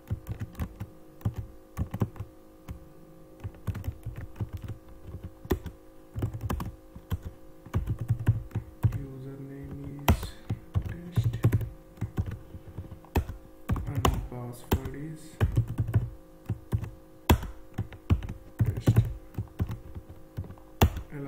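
Typing on a computer keyboard: irregular runs of keystrokes, over a steady low hum.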